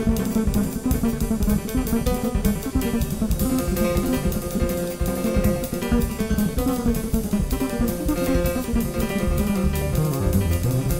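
Jazz piano trio playing: piano, plucked bass and drum kit, with busy cymbal strokes running throughout.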